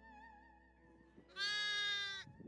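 Soft music with a wavering bowed-string melody fades out. Then, about a second and a half in, a lamb bleats once, a single loud call of about a second.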